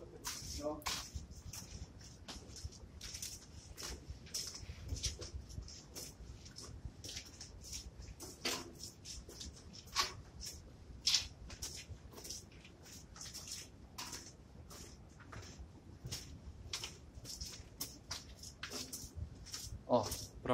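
Footsteps scuffing and crunching on a gritty concrete tunnel floor, irregular steps about one or two a second.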